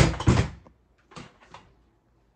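Handling noise: a loud knock with a rustle as the plush hot dog hot pad is pushed down into the small decorative wagon, followed by two brief, softer rustles.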